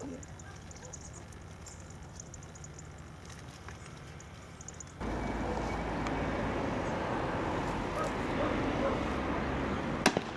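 Outdoor background noise. It is faint at first, then a louder, steady rushing sets in abruptly about halfway through.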